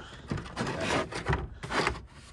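A molded dash cover being slid and pushed into place over a car's dashboard by hand: rough, irregular rubbing and scraping, with a few sharper scrapes in the second half.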